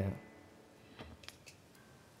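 The end of a sung 'yeah' dying away at the very start, then near quiet with three or four faint clicks about a second in, from the guitar being handled after the song.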